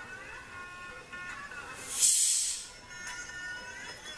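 Music playing faintly from a phone sealed inside a partly evacuated vacuum jar. About two seconds in, a short hiss as the lid's valve is pressed and outside air rushes back into the jar, while the music carries on.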